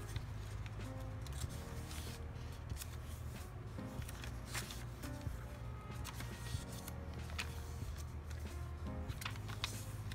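Paper pages of a handmade journal being turned and handled by hand, with scattered short rustles and flicks of paper, over quiet background music.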